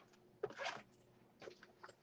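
Faint handling noise from a fabric backpack being opened: one short rustle a little under a second in, then a couple of light ticks near the end.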